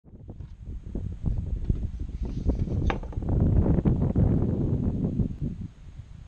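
Wind buffeting the microphone: an irregular low rumble that swells after the first second and dies down near the end, with one sharp click about three seconds in.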